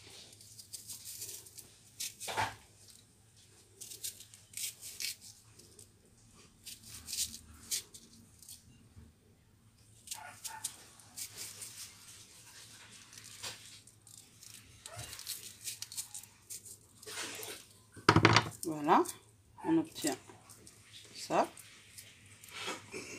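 Kitchen knife cutting into a raw shallot's layers, a series of small crisp clicks and crunches at irregular intervals. About eighteen seconds in, a short, louder voice-like sound.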